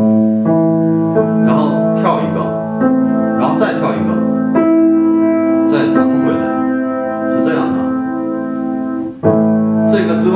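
Piano played by the left hand alone: a slow octave-arpeggio pattern on an A minor chord, each new note entering while the earlier ones are still ringing.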